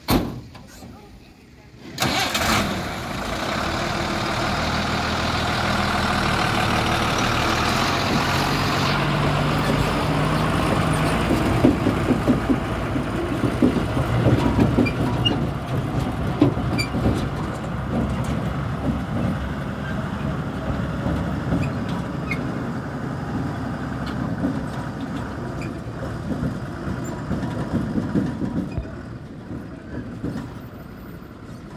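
A heavy truck's diesel engine starts with a sudden loud onset about two seconds in. It then keeps running, revving as the truck drives off, and grows fainter near the end.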